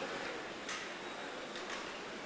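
Faint, steady hiss of background noise with no clear events, in a pause between lines of launch commentary.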